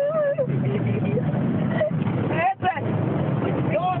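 Car driving through deep flood water, the water rushing and spraying against the body and windows, heard from inside the cabin.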